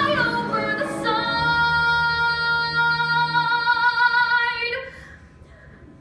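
Solo female voice singing live in a musical-theatre song: a short phrase, then one long held note of about three and a half seconds that stops about five seconds in.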